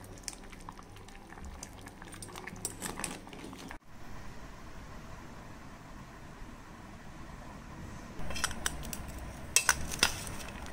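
Curry bubbling in a metal pot, with a steel ladle clinking and scraping against the pot's side. Near the end comes a short run of louder clinks of a spoon on the pot.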